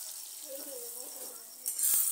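Beaten eggs with chopped tomato, green chilli and coriander sizzling in a frying pan as they are stirred with a metal spatula. The sizzle is faint at first and grows louder near the end.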